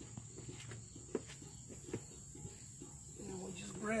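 Steady high insect chirring, with a few light knocks as the wooden parts of an old cider press and its slatted pressing basket are handled.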